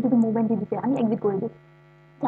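A person speaking for about a second and a half, over a steady low electrical hum that carries on alone once the voice stops.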